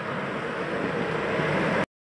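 Outdoor street noise: wind on the microphone over a vehicle engine running, getting slightly louder and then cutting off suddenly near the end.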